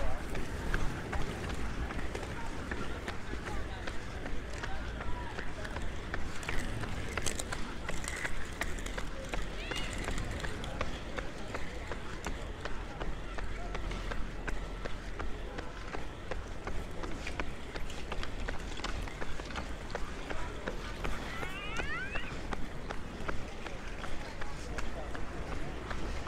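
Outdoor street ambience: indistinct chatter from a crowd of onlookers and a steady patter of steps on asphalt, with a low wind rumble on the microphone.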